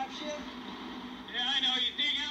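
Dialogue from a TV show: a person speaks briefly from about a second and a half in, over a steady low engine and traffic hum.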